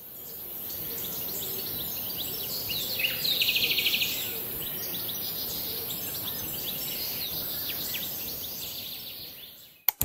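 Birds chirping and twittering over a steady outdoor hiss, with a fast trill lasting about a second, some three seconds in. The sound fades in at the start and fades out near the end.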